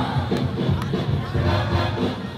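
Battle music with a steady beat, and a crowd shouting and cheering over it.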